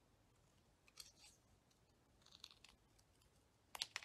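Faint snips of small scissors cutting a stamped image out of thick cardstock: a cut about a second in, a few more around the middle, and two sharper clicks of the blades near the end.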